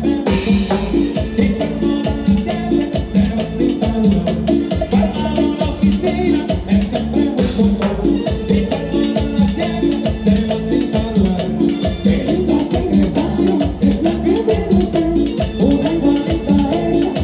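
Live salsa band playing an up-tempo groove, with timbales hits and cymbal crashes over a steady bass line. There is a crash just after the start and another about halfway through.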